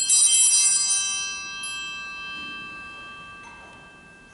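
Altar bell struck once as the host is raised at Mass. It rings out suddenly with a bright, many-toned sound and then fades away over about three seconds.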